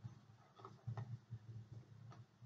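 Near silence with a low steady hum and a few faint rustles and soft ticks, about half a second to a second in, from gloved hands feeding a Foley catheter into a training manikin.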